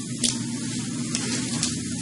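Steady hiss of background noise with a few faint ticks, in a pause between spoken phrases.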